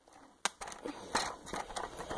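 Hands handling a plastic Lego camper van model: a sharp click about half a second in, then soft rustling with small plastic clicks.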